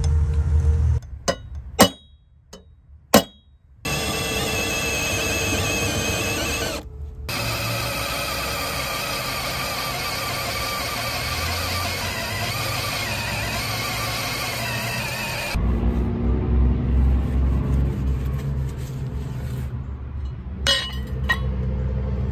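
Two sharp metallic taps of a hammer on a center punch, then a cordless drill boring through quarter-inch steel plate with a steady squealing whine, under background music, with abrupt cuts between sections.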